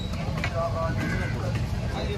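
Voices talking over a steady low rumble of busy outdoor background noise, with one sharp knock about half a second in.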